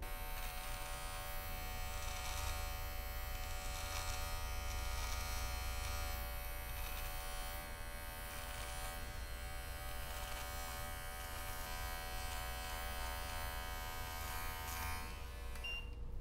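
Electric beard trimmer buzzing steadily as it is run across the neck to trim the beard neckline. It stops right at the end.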